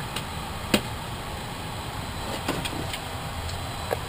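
Steady low hum of fans and equipment in the powered-up space shuttle's flight deck, with one sharp click about three quarters of a second in and a few faint ticks later.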